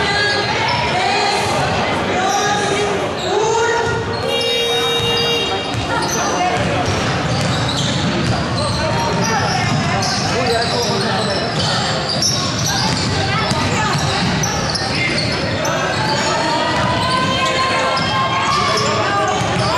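Basketballs bouncing on a wooden gym floor amid the overlapping voices of many players, echoing in a large sports hall.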